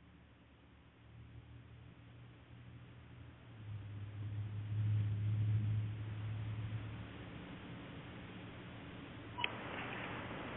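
Open telephone conference-call line with no one talking: a low hum that swells for a few seconds in the middle, then a sharp click near the end followed by louder hiss on the line.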